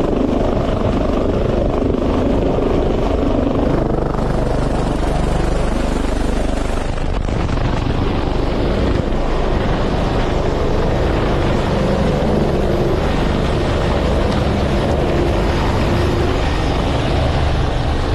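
Helicopter hovering at close range, its rotor and turbine engines running loud and steady throughout.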